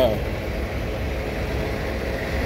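Steady low rumble of an idling semi truck's diesel engine.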